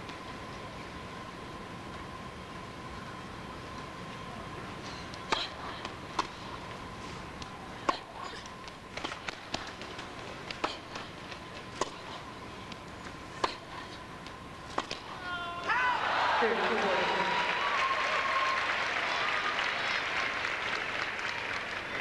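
Tennis rally on an indoor court: sharp racket strikes on the ball about every one to one and a half seconds. The arena crowd then breaks into loud cheering and applause as the point ends, with shouts in the crowd.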